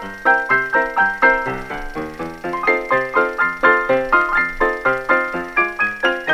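Background music: a quick, bouncy melody of short, bright struck notes, about four or five a second, in a steady run.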